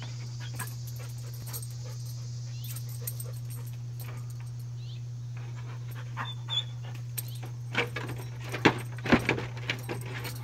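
Dalmatian's paws and claws knocking and scraping against a wooden gate as it hops on its hind legs and springs up onto it; the knocks come thicker and louder in the last few seconds. A steady low hum runs underneath.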